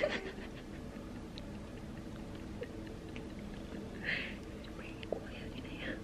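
Quiet room with a steady low hum, and faint breathy giggling: one short burst about four seconds in and a few softer ones near the end.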